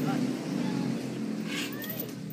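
A small engine running steadily, its hum growing quieter through the second half.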